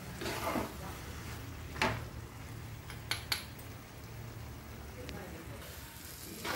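Metal spoon stirring diced mango in a pot: soft scraping with a few sharp clinks against the pot, two of them close together about three seconds in, over a steady low hum.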